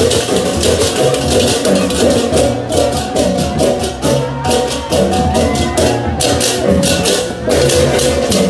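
Balinese processional gamelan (baleganjur) playing loudly: fast, continuous clashing of ceng-ceng cymbals over pitched gong-chimes and low gongs.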